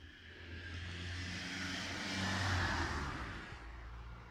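A car driving past on the street: engine hum and tyre noise swell to a peak about two and a half seconds in, then fade away.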